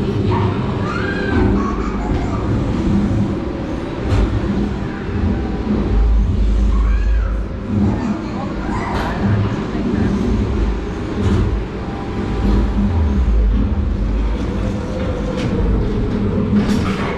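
Media dark ride show soundtrack from the screens: deep rumbling effects that swell twice, with short wordless cartoon-character voice sounds gliding up and down over them.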